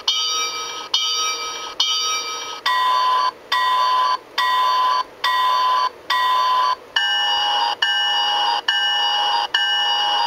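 MRC model-railroad sound decoder playing diesel locomotive bell sounds through the locomotive's speaker, ringing steadily at a little over one ring a second. The bell sound changes twice, about 3 seconds and 7 seconds in, as the decoder steps from one of its bell sounds to the next.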